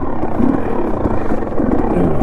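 Dirt bike engine running at low speed as the bike rolls along a rocky trail, its revs rising and falling.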